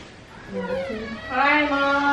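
A woman's long, drawn-out, high-pitched vocal exclamation, one held note after a short falling glide, like an excited welcoming 'heyyy' or 'awww'.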